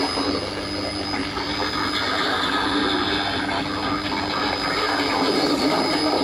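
Shortwave radio reception through a Panasonic radio-cassette's speaker: steady static and hiss with a few faint steady tones, the broadcast signal weak or faded under the noise.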